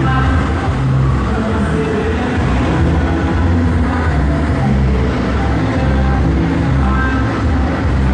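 Loud, bass-heavy music played through a sound truck's stacked speaker cabinets, heard right beside the truck, with deep bass notes that shift every half second or so.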